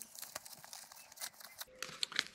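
Nylon admin pouch being pulled off the MOLLE webbing of a pack frame: faint rustling of nylon fabric and straps, with scattered small crackles.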